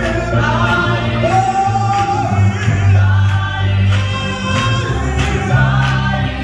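Live gospel singing: a male lead voice with a small group of singers, over a deep bass accompaniment and a steady beat.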